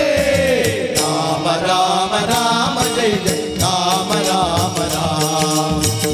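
Devotional bhajan singing accompanied by harmonium, tabla and small hand cymbals keeping a steady beat. A lead voice slides down on a long held note in the first second, then the melody carries on over the harmonium's held tones.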